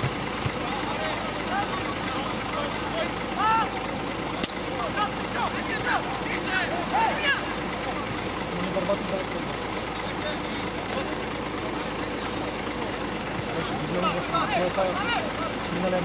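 Scattered distant shouts and calls from players across an open football pitch, over a steady background rush of noise. There is one sharp click about four and a half seconds in.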